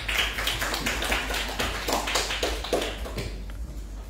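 Small audience applauding, a dense patter of hand claps that thins out near the end.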